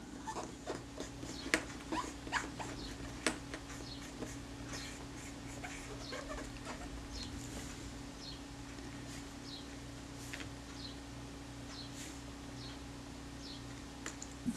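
A cotton bud rubbing and scrubbing on a small metal lens mount ring: faint little clicks and scrapes, busiest in the first few seconds, then brief high squeaks, over a steady low hum.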